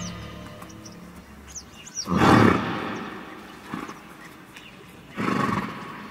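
A passage of music dies away in the first second. It gives way to an ambient sound-effect bed in which a large animal lets out two loud, rough, short calls, the first about two seconds in and the second about three seconds later. Small high chirps sound between them.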